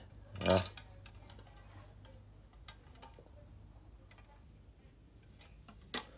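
Faint, scattered light clicks, with one sharper click near the end, as sections of a surf-casting rod are handled and picked up.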